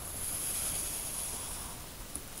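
Pencil shading on drawing paper: a steady, scratchy rubbing of graphite on paper that swells slightly about half a second in and then eases off.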